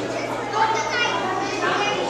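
Indistinct background chatter of several people, children's voices among them, with no clear words.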